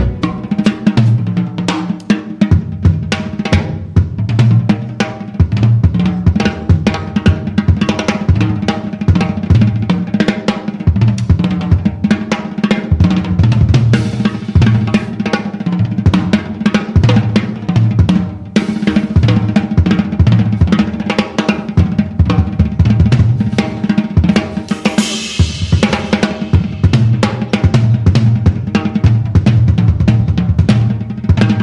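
Jazz drum kit played as a solo: quick snare, bass drum and tom hits over ride and crash cymbals, with a louder cymbal wash near the end.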